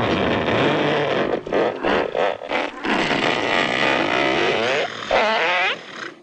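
A man's long, loud, rasping mouth noise, blown out through puffed cheeks. It breaks off briefly a few times in the first half and wavers up and down in pitch near the end.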